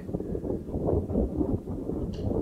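Wind buffeting a camera microphone, an uneven low rumble.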